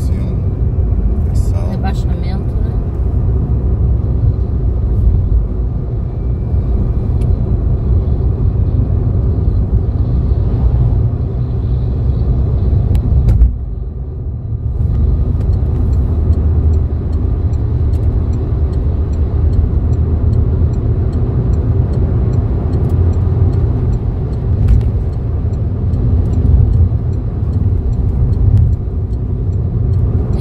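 Steady road and engine rumble of a car cruising at highway speed, heard from inside the cabin; it drops briefly about halfway through.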